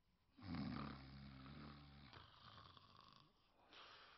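A man snoring in a drunken sleep: one long, low snore about half a second in, trailing off into a breath out, with the next snore starting near the end.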